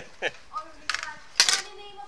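Sharp metallic clicks and clinks, the loudest about a second and a half in, from car lockout tools being worked against the car's door frame.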